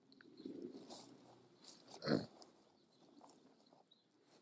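Faint rustling with one dull thump a little after two seconds in.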